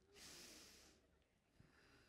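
A man's single long sniff through the nose, lasting about a second, miming smelling perfume.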